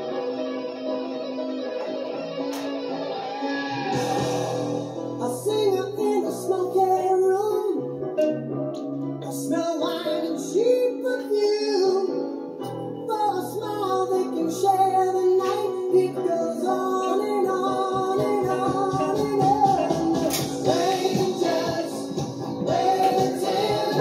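A song with singing, guitar and a bass line, played back on a speaker; a regular drumbeat stands out in the last few seconds.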